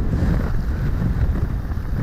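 A pickup-based fire brush truck driving toward the microphone: a steady low rumble of engine and tyres, mixed with wind buffeting the microphone.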